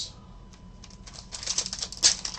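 Foil trading-card pack wrapper crinkling and crackling in the hands, a run of quick crackles starting about a second and a half in.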